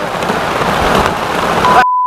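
Steady hiss of heavy rain falling. Near the end it cuts off abruptly and a single steady high-pitched electronic beep sounds, a censor bleep.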